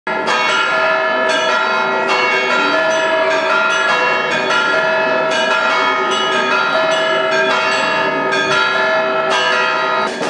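Church bells ringing a peal: several bells of different pitch struck about twice a second, each tone ringing on into the next.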